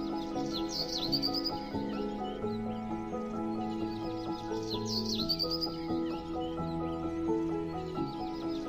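Instrumental background music of held chords, with a high chirping trill that recurs about every four seconds.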